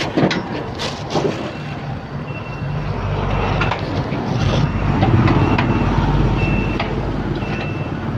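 A vehicle engine running with a steady low hum that sets in about two seconds in and grows louder, with short high beeps about once a second, like a reversing alarm, and a few sharp knocks.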